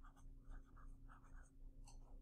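Faint scratching of a pen writing a short word on notebook paper, a quick run of separate strokes.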